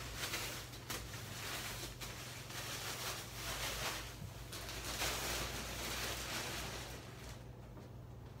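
Disposable protective gown rustling and crinkling as it is torn off, rolled up and crumpled by gloved hands, in irregular swishes that die down near the end.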